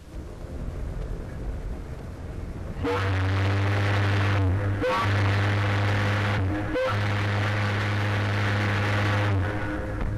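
A low ship's whistle blown in three long blasts, the last the longest, each with a hiss behind the tone, starting about three seconds in over a quieter rumble.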